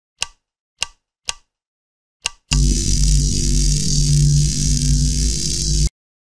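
Intro music and sound design for a logo reveal: four short sharp clicks about half a second to a second apart, then a loud, bass-heavy sustained drone with hiss over it for about three and a half seconds, which cuts off suddenly.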